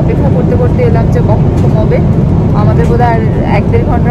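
Steady low drone of an airliner cabin: engine and airflow noise, with a voice talking in the background.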